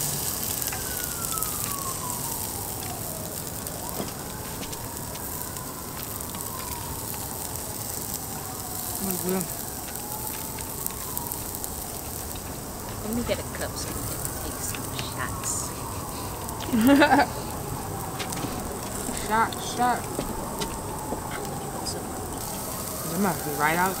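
An emergency-vehicle siren wailing, its pitch slowly rising and falling every few seconds, over the sizzle of meat on an electric grill.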